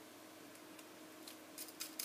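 Mostly quiet, then a few light clicks in the last half second as fingers work small M3 nuts onto the screws of a small cooling fan on an acrylic plate.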